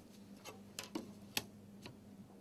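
Faint, sharp clicks and taps of plastic set squares being moved and butted against each other on drawing paper: about five ticks, the loudest a little past the middle, over a faint steady hum.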